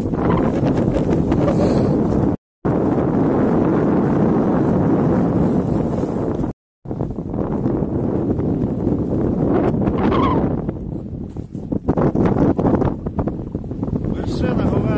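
Strong mountain wind buffeting the microphone: a loud, dense, low rumble that cuts out completely twice for a moment.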